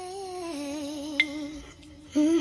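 A wordless hummed melody with a slight waver, sliding down in steps, and one bright bell-like ping about a second in.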